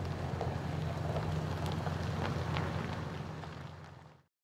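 Cargo van engine running as the van pulls away, a steady low hum that fades out near the end.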